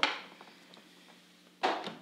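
A single sharp knock of a small object set down on the wooden cupping table, dying away quickly, followed near the end by a short spoken word.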